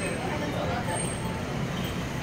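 Steady road traffic noise with indistinct voices in the background.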